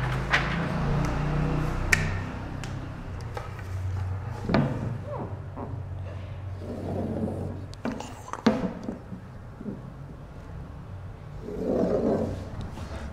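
Whiteboard marker drawn along a wooden ruler on a whiteboard: scattered sharp knocks as the ruler is set against the board, a few short squeaks from the marker, over a steady low hum.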